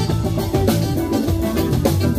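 Live band playing an instrumental funk jam: electric guitars, keyboard and saxophone over a steady drum-kit groove.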